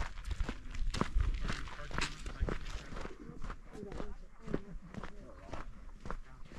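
Footsteps on a sandy, gravelly desert dirt trail, about two steps a second at a steady walking pace. Faint voices of other hikers are heard now and then.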